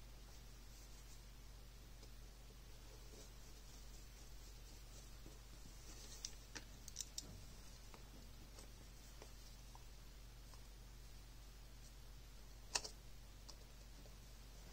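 Faint small clicks of a precision screwdriver and screws being worked into the plastic housing of a Pentax Ni-Cd Battery Pack LX: a few quick clicks about six to seven seconds in and one sharper click near the end, over a faint low hum.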